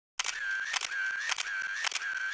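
Camera shutter sound effect: clicks about twice a second, each gap between clicks filled by a high, steady whine.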